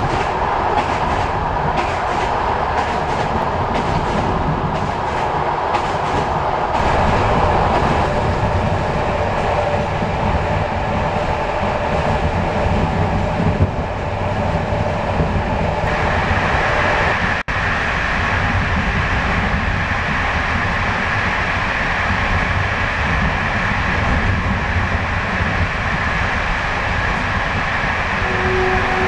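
Passenger train running on the rails, heard from inside the carriage: a steady, loud rumble and rattle of the wheels on the track, breaking off for an instant about two-thirds of the way through.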